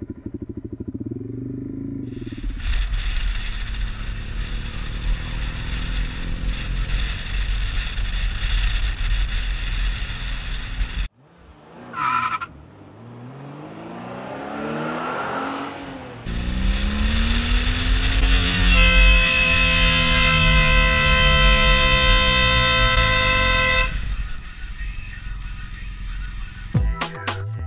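Motorcycle riding along a road, its engine rising and falling in pitch as it accelerates and eases off. A sharp break comes about eleven seconds in. Near the end a vehicle horn sounds for several seconds.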